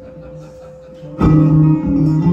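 Amplified banjo that comes in suddenly and loudly about a second in, with plucked and strummed chords ringing on. Before that there is only a faint steady hum.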